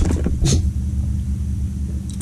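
A man gulping a drink from a glass and spluttering once about half a second in as it goes up his nose, over a steady low rumble.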